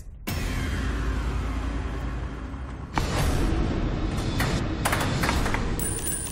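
Tense game-show music with a falling sweep as a counter is sent into the Tipping Point coin-pusher machine, building again about halfway through, with a few sharp clicks near the end.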